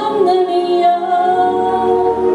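A woman singing a slow Mandarin pop ballad into a microphone over backing music, holding a long note and then stepping down to a lower held note about halfway through.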